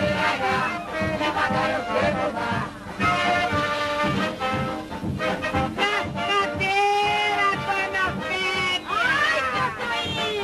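Lively band music with brass accompanying a song-and-dance number from a 1950s film soundtrack, with voices in it here and there.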